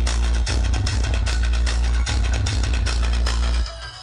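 Loud electronic dance music with a heavy bass line, played through a large DJ speaker tower on a vehicle. Near the end the bass cuts out and the music drops to a quieter, thinner break.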